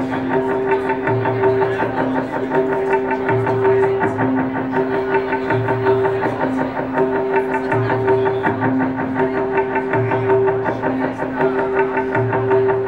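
Live instrumental music led by guitar: a fast, rapidly picked figure over two alternating held notes and a repeating low note, the whole pattern cycling steadily about every two seconds.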